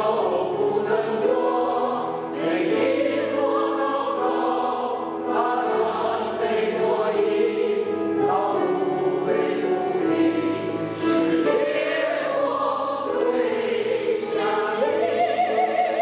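A small mixed group of men's and women's voices singing a Mandarin worship hymn together, in sustained phrases.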